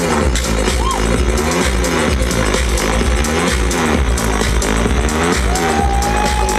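Electronic dance music from a live DJ set, played loud over a festival PA: a steady kick drum under a repeating bass line.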